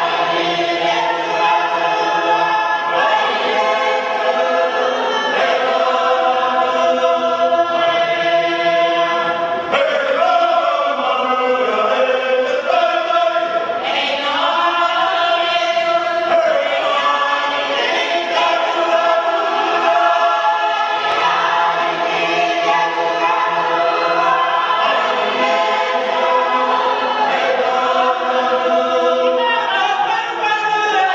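Unaccompanied choir singing in several voice parts, with long held notes and some sliding pitches. No drums.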